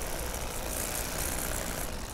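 Bubba Blade electric fillet knife with a 9-inch flexible blade running steadily as it cuts behind a crappie's gill plate and down the backbone.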